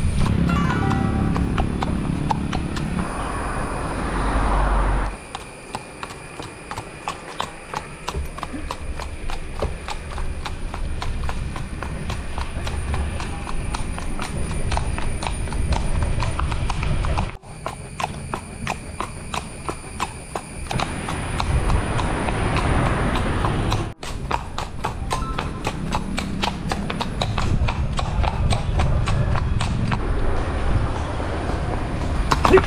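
A horse's hooves clip-clopping on a paved road in a quick, even rhythm.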